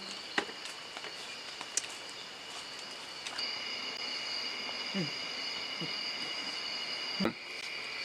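Night insects, crickets, chirring steadily at several high pitches, louder from about three seconds in. A few short, low falling sounds come through, and there is one sharp click near the end.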